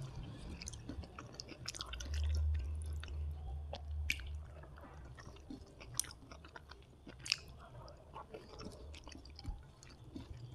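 Close-miked chewing of a mouthful of rice and squid roast, with wet mouth clicks. There is also the squish and scrape of fingers gathering rice and sauce on a paper plate right by the microphone, with a low rumble of handling between about two and four seconds in.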